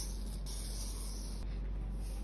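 Fine coloured sand hissing steadily as it is sprinkled onto an adhesive sand-art sheet and slides across the paper while the sheet is tilted to shed the loose grains.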